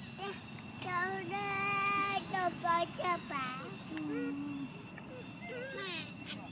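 Infant long-tailed macaque calling: a series of high, whining coos, one held about a second near the start, followed by shorter calls that rise and fall in pitch.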